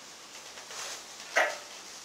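A man breathing hard while pressing on a chest press machine: a faint breath in, then one sharp, short exhale about a second and a half in.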